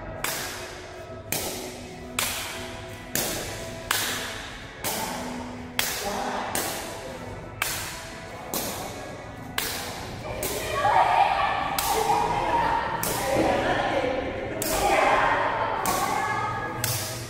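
Shuttlecock kicks in a rally: sharp smacks of a foot meeting a feathered shuttlecock, about one a second, each ringing briefly in a large hall. Background music, louder in the second half.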